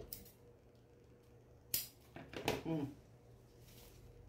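Fusible backing paper and a fabric strip being handled on a cutting mat: a sharp papery snap about two seconds in, and a soft rustle near the end.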